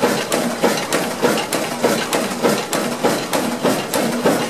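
Old Ruston Hornsby stationary diesel engine running, its valve gear (rocker levers and cam rollers) clacking in a steady metallic rhythm of about three beats a second.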